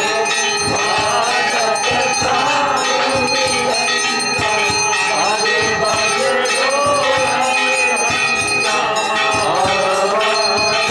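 Temple bells rung continuously and rapidly during an aarti, a dense clangour of overlapping strikes, with voices singing over them.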